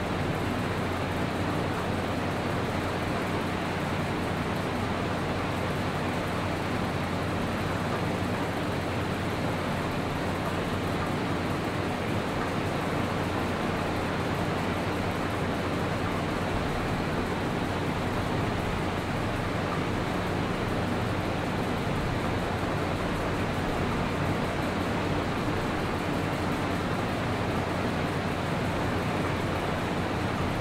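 A steady, even hiss with a faint low hum under it. It stays the same throughout, and no separate event stands out.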